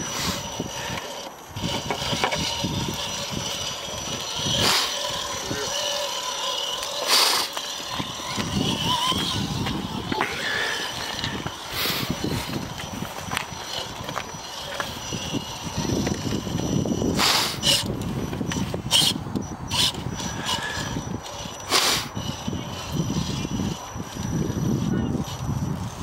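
A 2.2-class electric RC rock crawler driving over rocks, its motor and drivetrain whirring in stop-start bursts. Sharp knocks and scrapes come from its tyres and chassis on stone, several times and louder now and then.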